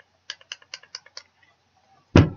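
A handheld vape box mod clicking under the fingers: about six quick, light clicks in under a second, then nothing.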